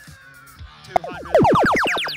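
The FRC Power Up field's arcade-style power-up sound effect: a short blip about a second in, then a loud cascade of falling tones. It signals the red alliance playing its Levitate power-up. Background music plays under it.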